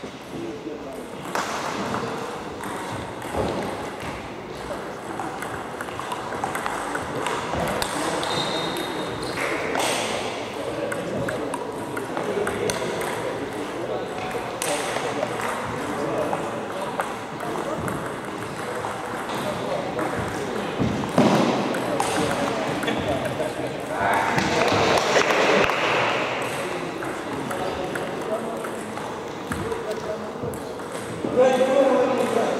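Table tennis rallies: the celluloid ball clicking off paddles and the table top in irregular runs of hits, with background voices in the gym hall.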